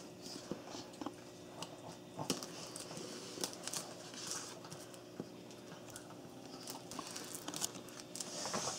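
Utility knife blade scratching and slitting the plastic shrink wrap on a phone box, with faint crinkling of the film. It comes as scattered short scratches and clicks with a few brief rustles.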